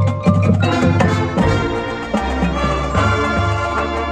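Marching band playing its show music: winds and brass ensemble with percussion, quick rhythmic strikes in the first second giving way to held chords.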